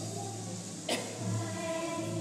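A group of children singing together as a choir, the sung notes coming up more strongly near the end, with a single sharp knock about a second in.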